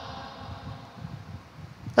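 A pause in the speech, leaving only a faint, steady low rumble and hiss of room tone.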